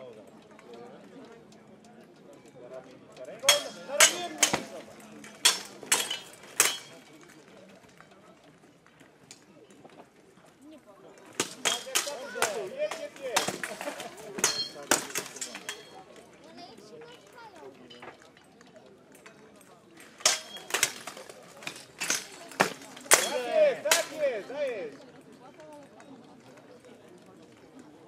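Steel swords clashing against each other and against plate armour in a medieval armoured duel. The blows come in three rapid flurries of sharp metallic clanks, with pauses between them.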